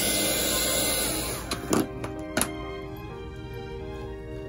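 Small handheld heat gun blowing hot air with an even rush, warming a wood applique to soften it, then switched off about a second and a half in. Two short knocks follow, as of the tool being set down on a table.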